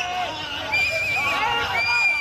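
A crowd of fans shouting over one another, with shrill whistles: a wavering whistle about a second in, then a long steady whistle near the end.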